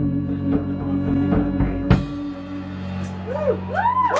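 A live rock band on drums, bass and electric guitar plays the last bars of a song, ending on a final crash about two seconds in and letting the chord ring on. Near the end, audience whoops and cheers begin.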